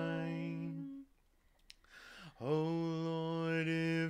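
Two voices singing an unaccompanied sea shanty in harmony. A long held note ends about a second in, followed by a brief silent breath, and a new held note begins about halfway through.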